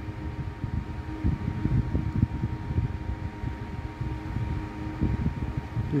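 Low, uneven rumbling background noise with a faint steady whine running through it.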